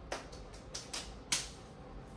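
Clothing being handled as a top is pulled on and adjusted: a quick run of short rustles and clicks, about seven in two seconds, the sharpest a little past the middle.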